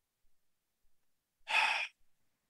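A man's single short, breathy sigh of frustration about one and a half seconds in.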